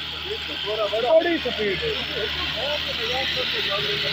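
YTO EMF604 60 hp tractor's diesel engine running steadily under load while pulling a rotary tiller through dry soil. A voice talks over it throughout.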